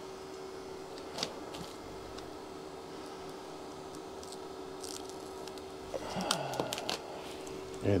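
Faint handling of a small plastic parts bag and model-kit parts: a light click about a second in and scattered soft rustles and ticks over a steady low hum. A brief low mumble of voice about six seconds in.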